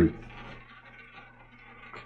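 Roulette ball rolling around the ball track of a double-zero roulette wheel, a faint steady whirring that slowly fades as the ball loses speed.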